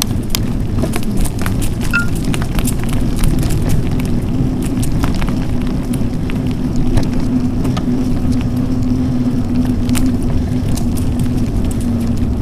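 Mountain bike ride on a gravel and dirt trail heard from a bike-borne camera: a steady low rumble of tyres and wind on the microphone, with frequent small clicks and rattles from the bike and loose gravel, and a steady low hum through the middle.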